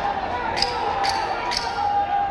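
Three sharp thuds about half a second apart over a steady murmur of crowd voices: boxing gloves landing punches in a clinch.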